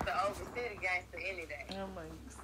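Quiet, indistinct speech: people talking low, with no clear words.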